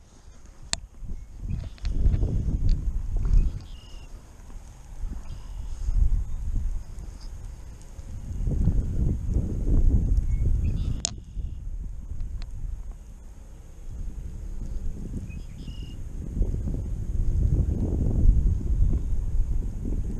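Wind buffeting the microphone in gusts that swell and fade every few seconds, with a couple of sharp clicks, one about eleven seconds in.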